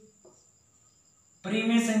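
A man speaking Hindi starts again about three quarters of the way through, after a pause. A faint, steady high-pitched whine runs underneath throughout.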